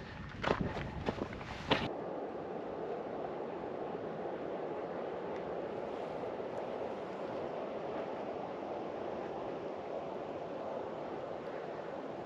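A few footsteps on rocky ground, then steady wind noise with no distinct events.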